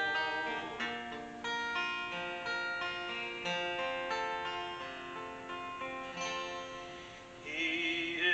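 Acoustic guitar strummed in an instrumental passage, chords ringing on between strokes. A man's singing voice comes back in near the end.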